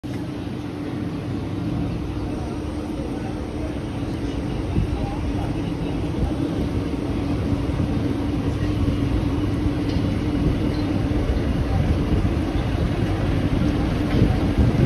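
Mumbai suburban local train running, heard from on board at an open door: a continuous rumble of wheels on track under a steady hum, growing gradually louder.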